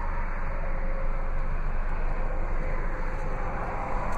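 Steady low rumble and hiss of background noise with no sudden sounds.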